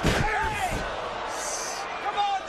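A wrestler slammed down onto a wrestling ring: one heavy thud at the start, with the ring's boom rumbling on for under a second. Voices follow.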